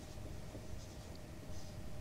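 Marker pen writing on a whiteboard: faint, short scratchy strokes of the tip, a few about a second in and another near the end.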